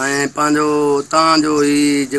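A man's voice chanting in long, level held notes, about half a second to a second each, with short breaks between them.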